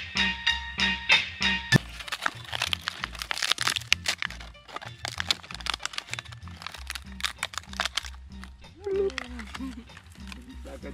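Plucked-string background music that cuts off abruptly about two seconds in, followed by rapid irregular crackling and crunching of dry plant material being handled. A short voice comes near the end.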